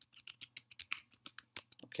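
Typing on a computer keyboard: a quick run of keystrokes, several a second.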